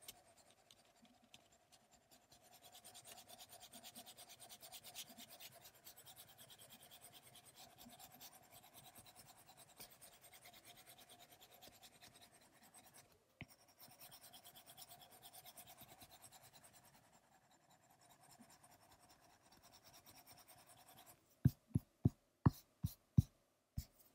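Apple Pencil tip scratching faintly on the iPad's glass screen in quick, short hatching strokes. Near the end, a run of about eight sharp taps.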